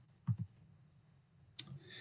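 Two soft clicks close together shortly after the start of a pause in speech, then near silence and a short breathy sound near the end.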